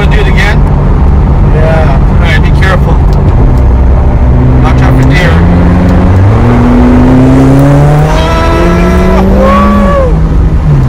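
McLaren 765LT's twin-turbo V8 heard from inside the cabin while driving. The engine note steps up about halfway through, climbs steadily as the car accelerates, then drops sharply near the end as it shifts up. Voices in the car come through over it.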